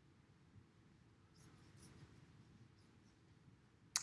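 Near silence, with faint soft brushing of a wet paintbrush stroking watercolour paper for about a second, starting a little over a second in.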